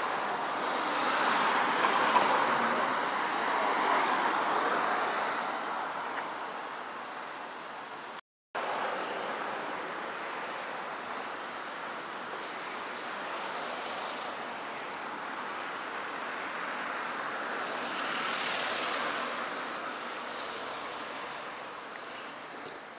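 Street traffic noise from passing cars: a steady rush that swells a couple of seconds in and again near the end, with a brief dropout about eight seconds in.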